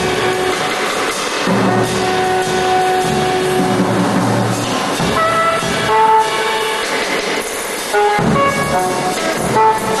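Saxophone improvising free jazz. It holds long, steady notes through the first half, then from about five seconds in plays shorter notes that jump around in pitch.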